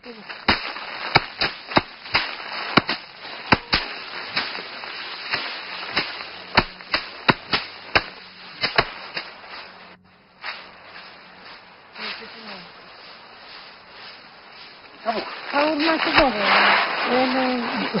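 Rice being threshed: a quick, irregular run of sharp cracks and whacks over steady outdoor noise, thinning to a few quieter knocks about halfway through.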